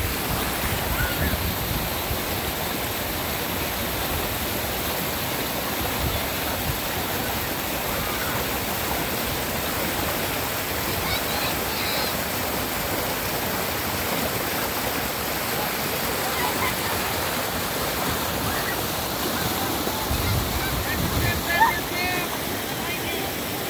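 Creek water rushing steadily over rock ledges and small cascades, with faint voices in the background and a brief louder splash-like burst near the end.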